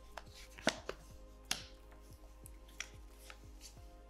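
Tarot cards being drawn from the deck and laid down on a wooden tabletop: a series of light, crisp card snaps and taps. The two sharpest come in the first half, under a second apart, with fainter ones after. Faint background music plays underneath.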